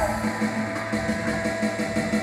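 Live rock band playing, electric guitars and keyboard holding sustained notes that ring through the moment, between sung lines.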